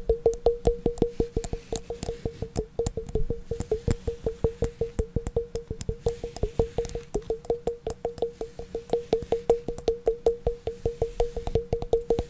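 Fast, even tapping on a hard, resonant object, about six taps a second, each tap ringing the same clear low note.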